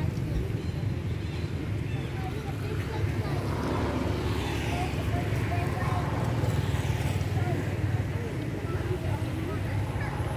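Outdoor background noise: a steady low rumble, with a hiss that swells and fades in the middle, and faint scattered voices.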